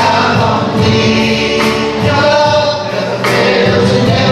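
A church worship band playing a song live: singers with acoustic and electric guitars and a bass guitar.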